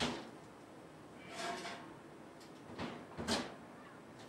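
A spoon scraping and clinking against a metal mixing bowl as stuffing is scooped into portobello mushroom caps: a few short, faint scrapes, one about a second in and two close together near the end.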